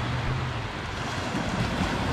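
Small waves of gentle surf washing up on a sandy beach, a steady rushing hiss, with wind rumbling on the microphone.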